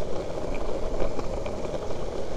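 Skateboard's urethane wheels rolling fast over rough, cracked asphalt: a steady rumble with a few faint ticks.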